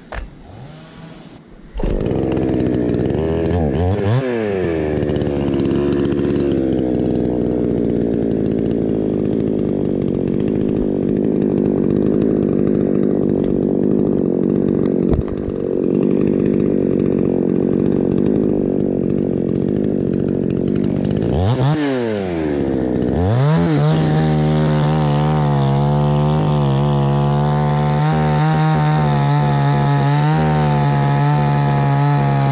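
Orange two-stroke petrol chainsaw running: quiet at first, then opened up loud about two seconds in. Its engine pitch dips and climbs back twice, near the start and again about two-thirds through, then holds at steady high revs.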